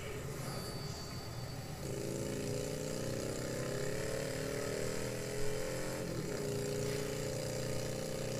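Motorcycle engine running, coming in about two seconds in after a rushing noise. Its pitch rises steadily as it accelerates, dips briefly about six seconds in as at a gear change, then holds steady.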